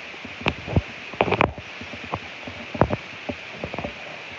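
Handling noise from over-ear headphones being held and turned in the hand: irregular clicks and knocks over a steady hiss.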